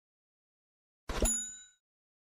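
A single bright bell 'ding' sound effect, the notification-bell chime of a subscribe animation, struck about a second in with a short knock at its onset and ringing out over about half a second.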